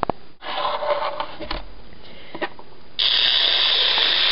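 Muffled rustling, then a sudden loud, steady hiss about three seconds in that runs on past the end.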